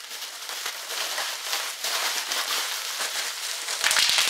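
Plastic bubble wrap crinkling and crackling as it is pulled out of a cardboard box and handled, with a quick run of sharp clicks near the end.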